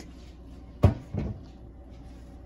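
Two knocks about a third of a second apart, the first the louder: a plastic spice shaker being set down and handled on a kitchen counter.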